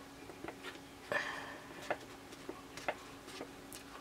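Fingertips and nails pressing and tapping a paper towel down onto a small plastic makeup pan: faint, irregular soft clicks, with a brief paper rustle about a second in.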